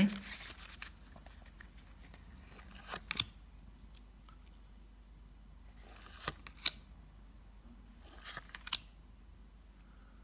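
Tarot cards being dealt from the deck onto a wooden table: quiet rustling, then three clusters of short card snaps and slides, about three, six and a half, and eight and a half seconds in, as each card is laid down.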